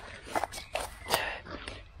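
A few soft footsteps and rustles on a dirt path at the grassy verge: short, irregular scuffs, about five in two seconds.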